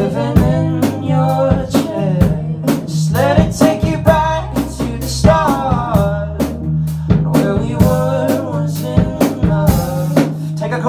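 Live band playing in a small room: a drum kit keeps a steady beat of sharp hits under held low bass notes and a wavering melody line.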